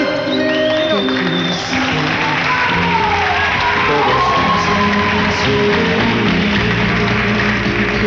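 A live ballad's instrumental backing plays sustained, gliding melody lines while the studio audience applauds and cheers over it.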